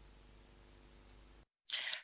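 Faint steady hiss and hum from the shared video's audio, with two quick faint clicks about a second in: a computer mouse clicking to pause the video. The hiss cuts off suddenly, and a short rush of noise follows near the end.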